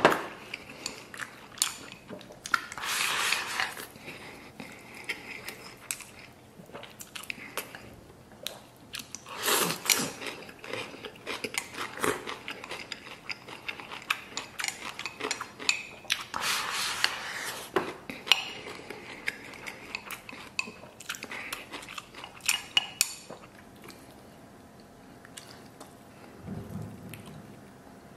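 Close-miked eating: chewing mouthfuls of rice and braised beef rib, with chopsticks clicking and scraping against a ceramic rice bowl in many short sharp ticks.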